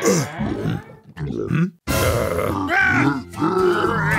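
A cartoon character's voice grunting: several short vocal sounds with sliding pitch, broken by a brief silence a little before the middle.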